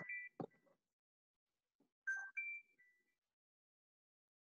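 A short three-note electronic notification chime, the notes stepping up then back down, about two seconds in; the end of a similar chime overlaps a spoken 'okay' at the start.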